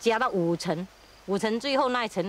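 Speech only: a person talking in short, quick phrases, in a language the recogniser did not transcribe, likely Chinese.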